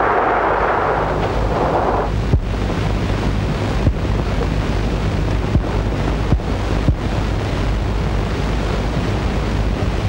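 Sea surf washing in a steady rush for about the first two seconds, then a steady hiss over a low hum with a few faint clicks.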